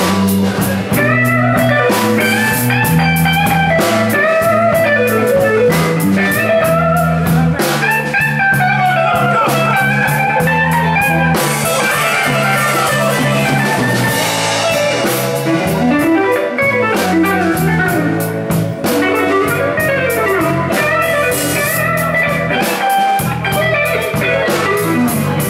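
A live blues band plays an instrumental passage. An electric guitar leads with bending, sliding notes over a walking bass line and a drum kit with frequent cymbal and snare hits.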